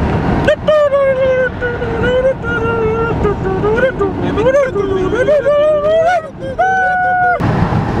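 A single high voice singing a wordless, wavering tune for about seven seconds, with its pitch sliding up and down and a long held note near the end before it cuts off suddenly.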